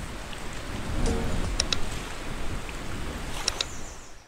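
Steady rushing water noise, like surf or waves, with a few short sharp clicks near the middle and again near the end.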